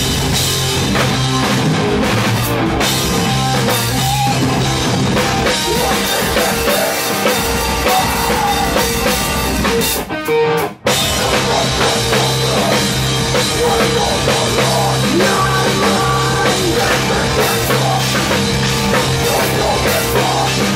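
Live metalcore band playing: distorted electric guitars, bass and a pounding drum kit, loud and dense. About ten seconds in the band cuts out twice for a split second, a stop-time break, then plays on.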